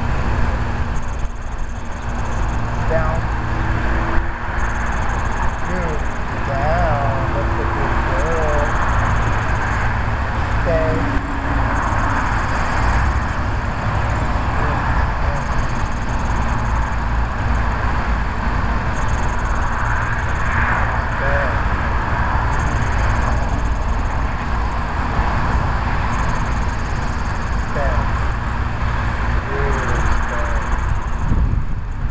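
Steady outdoor background noise: a low rumble throughout, with a few faint short chirps and a high hiss that comes and goes every few seconds.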